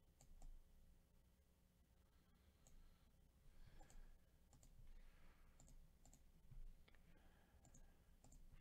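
Near silence: faint room tone with about ten soft, scattered clicks and a light rustle partway through.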